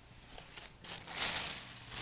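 Thin plastic shopping bag crinkling as it is handled, building to its loudest a little past a second in.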